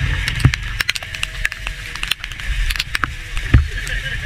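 Motorcycle ridden slowly on a wet road in rain: a low steady rumble under a hiss of rain, with scattered sharp taps and one louder knock about three and a half seconds in.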